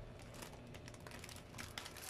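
Plastic snack packaging and cardboard being handled as packs are lifted out of a box. It makes a faint run of small clicks and crinkles that come thicker in the second half.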